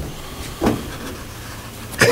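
Room tone in a pause between speakers: a steady hiss through the meeting-room microphone, with one short sound a little over half a second in.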